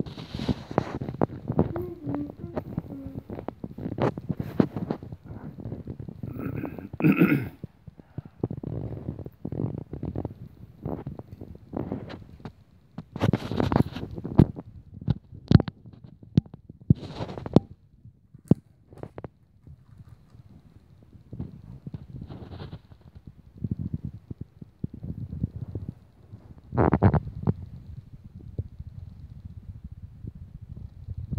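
Irregular clicks and knocks of plastic Lego pieces and track being handled on a rug, over low rumbling handling noise on the microphone.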